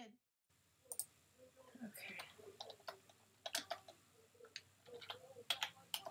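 Typing on a computer keyboard: faint, irregular key clicks, some in quick pairs.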